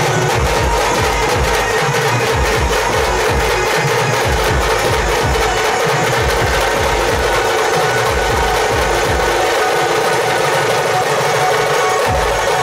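Dhol-tasha drumming: loud, continuous rapid drum beats, with dense fast strokes over deep dhol hits.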